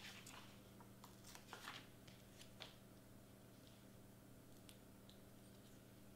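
Near silence: faint rustles and light clicks of fingers handling small paper hearts and foam adhesive squares on a cutting mat, mostly in the first three seconds, over a faint steady hum.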